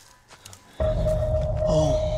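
A trailer sound-design hit: about a second in, a sudden loud low rumble starts, with a steady eerie tone held above it.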